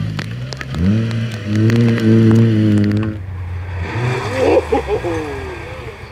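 Rally car engine revving hard as the car runs off onto the grass: the pitch jumps up about a second in and holds high for a couple of seconds. After an abrupt change partway through, there are voices and gliding, rising and falling sounds, with the engine noise lower.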